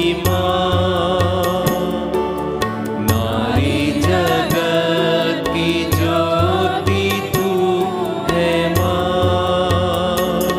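A women's choir singing a devotional hymn in unison over instrumental accompaniment with a steady, regular beat.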